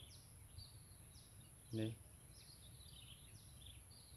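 Faint outdoor quiet with a bird calling in short, high, falling chirps, repeated every half second or so. A brief vocal sound from a man comes near the middle.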